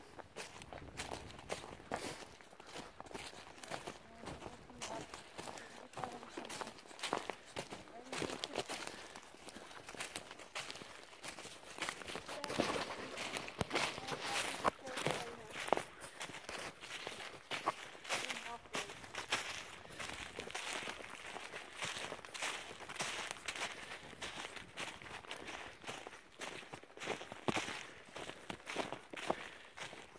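Footsteps of people walking through dry fallen leaves, the leaf litter crunching and rustling with each step at a steady walking pace.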